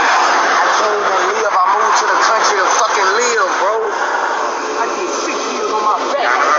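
Indistinct talking over steady roadside traffic noise, heard through a police body camera's microphone.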